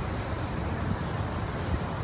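Steady low outdoor rumble with a hiss above it, unbroken and without distinct events.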